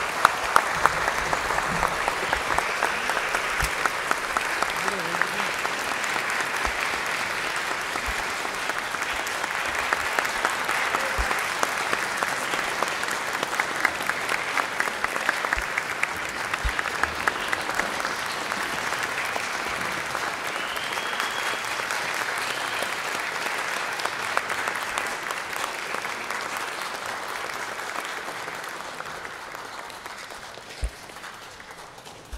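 A concert-hall audience applauding steadily, the clapping thinning and fading away over the last few seconds.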